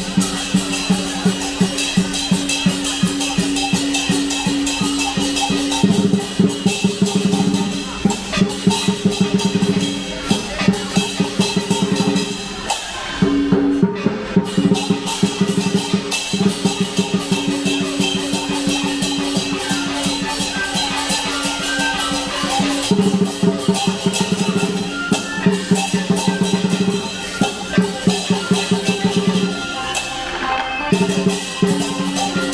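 Live dragon-dance percussion: a big Chinese drum beaten in fast, dense strokes over clashing cymbals and gong, keeping time for the dancers. It breaks off briefly about 13 seconds in, then starts up again.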